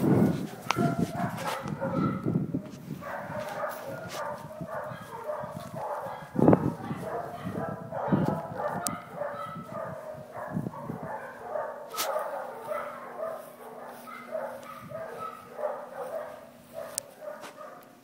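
Dogs barking over and over, short overlapping barks throughout, with a person's brief laugh at the very start. A low steady hum runs underneath for several seconds past the middle.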